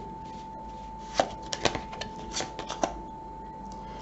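A deck of tarot cards being shuffled and handled by hand: about ten sharp card clicks and slaps over nearly two seconds, starting about a second in.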